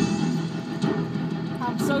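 Music from an FM radio broadcast synced to a Christmas light show, playing steadily with a low bass line. A voice begins just at the end.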